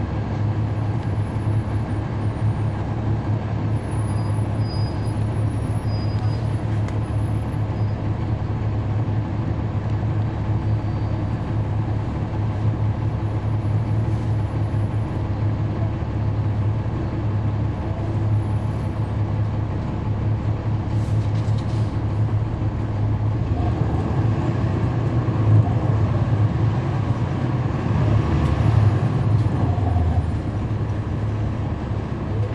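Cummins ISL9 diesel engine of a 2011 NABI 40-SFW transit bus heard from on board, droning steadily under way. It grows louder and busier in the last several seconds.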